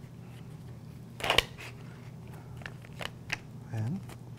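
Sterile packaging of a butterfly needle set being peeled open and handled: a short crinkling rip about a second in, then a few small plastic clicks and ticks.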